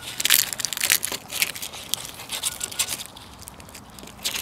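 Close-miked crunching and crackling of a raw eggshell as a Siberian husky bites and chews it, thickest in the first two seconds and thinning toward the end.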